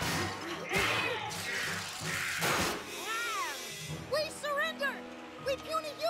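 Cartoon soundtrack: a couple of heavy crashing impacts mixed with short vocal cries in the first half, then music with a wavering melody over held notes.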